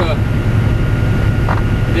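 Steady low drone of a semi truck's diesel engine and tyres on wet highway at cruising speed, heard inside the cab.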